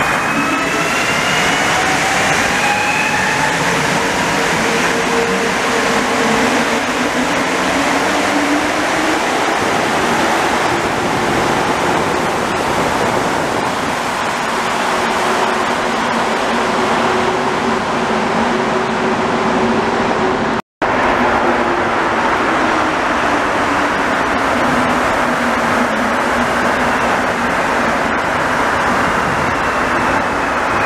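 Rubber-tyred Montreal metro trains: an MR-73 pulling out, its motor tones rising in pitch over the first several seconds above a steady rush of tyres and wheels. After a brief dropout about two-thirds in, an Azur train comes through with tones falling in pitch as it slows.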